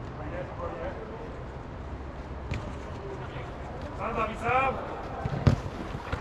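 A football struck hard on artificial turf, one sharp thud near the end, after a player's shouted call about four seconds in, over a steady low hum.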